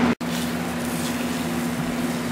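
An egg frying in a hot cast-iron skillet, a steady sizzle with a steady low hum under it. The sound drops out for an instant just after the start.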